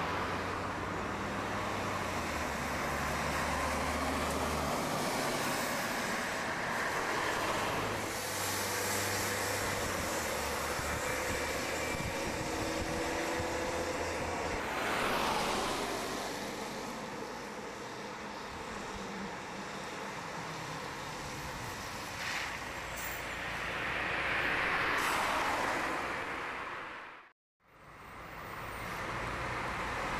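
Road traffic: cars and a city bus going by, the noise of passing vehicles swelling and fading about halfway through and again near the end. The sound drops out for a moment near the end.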